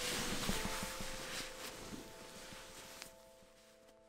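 Nylon sleeping bag and tent fabric rustling, with soft knocks, fading out over about three seconds. A soft sustained musical drone runs underneath.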